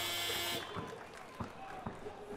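Electronic buzzer sounding a steady tone that cuts off about half a second in, followed by a few short, faint thumps.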